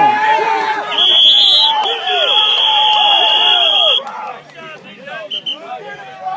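A whistle blown in one long steady blast of about three seconds, with a short toot near the end, over players shouting during a football circle drill.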